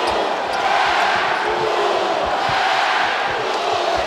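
Basketball being dribbled on a hardwood court, short thumps about twice a second, over the steady noise of a large arena crowd.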